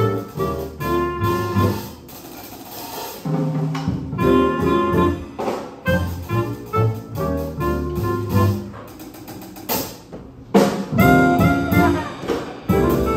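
Live small-group jazz: a clarinet plays the lead line over piano, upright bass and drums. The playing drops back briefly near the end, then comes in fuller.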